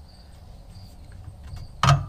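Quiet background, then near the end a single sharp metal clank as the trailer's fold-up camper jack is gripped and pulled out of its locked travel position.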